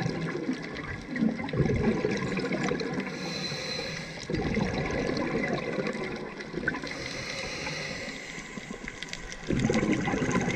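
Scuba breathing through a regulator, heard underwater: three bubbling exhalations a few seconds apart, with a softer hiss of inhaling between them.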